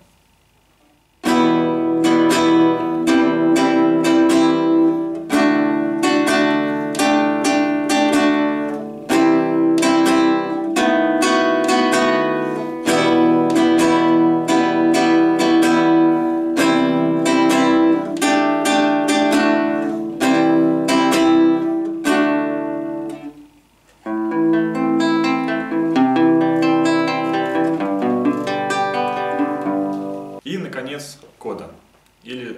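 Nylon-string guitar playing a chorus: from about a second in, syncopated strummed chords; then, after a short break about three-quarters of the way through, a fingerpicked arpeggio pattern of single notes.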